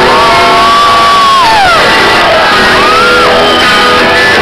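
Rock band playing live in a large hall, loud, with a long high shout held steady and then sliding down in pitch about halfway through, and a shorter rising shout near the end.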